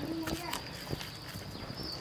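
A steady, high-pitched insect buzz, like cricket song, under scattered light clicks and knocks, with a brief murmur of voice about a third of a second in.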